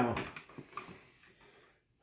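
A person's voice finishing a word, then near quiet with a few faint small clicks.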